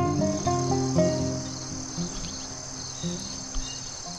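A steady, high-pitched chorus of crickets. Gentle background music fades out under it over the first couple of seconds.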